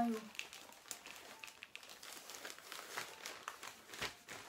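Plastic bag of dry potting soil crinkling as it is tipped and handled, with soil being sprinkled into a plastic pot; a run of irregular small crackles.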